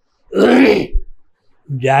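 A man clearing his throat once, a short rough burst under a second long, before he starts speaking again near the end.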